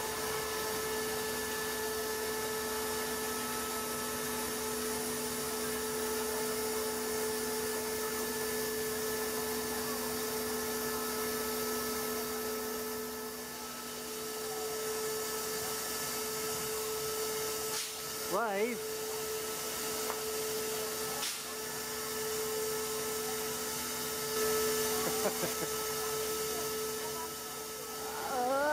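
Steady machine whine under a high hiss from a standing steam locomotive's auxiliary machinery, dipping briefly about halfway. A laugh and a few words come about two-thirds of the way in.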